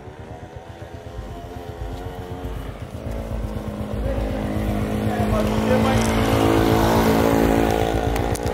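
A motor vehicle engine running with a low, pulsing rumble, growing steadily louder over the last few seconds as it comes closer.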